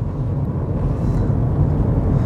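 Steady low rumble of a car's engine and tyres on the road, heard inside the cabin while driving, growing slightly louder.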